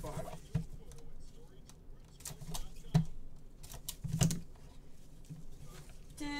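Trading cards and card holders handled by gloved hands on a table: soft handling noise with a few sharp taps, the loudest about three and about four seconds in.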